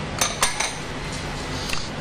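Dishes clinking: a bowl knocking against a glass mixing bowl as dough is worked by hand. Two sharp clinks close together, then a fainter one near the end.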